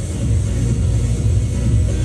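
Loud music with a heavy bass line, playing through a venue sound system.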